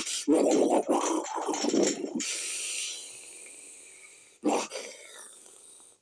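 A man's voice making rough, animal-like eating noises for a wolf hand puppet for about two seconds, then a long breathy exhale that fades out, and one short sharp vocal burst about four and a half seconds in.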